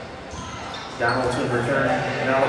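Several voices calling out in a large gymnasium, starting suddenly about a second in and carrying on loudly.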